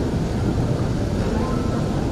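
A pause between phrases of a Qur'an recitation (tilawah): a steady low rumble of room noise with no voice, until the chant resumes.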